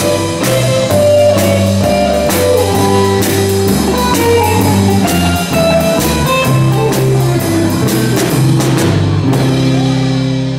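Live band playing an instrumental passage with no singing: electric guitars over bass and drum kit, with regular drum strikes.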